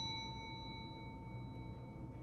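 The slowly fading ring of a bell-like notification ding, one clear tone with fainter higher overtones dying away.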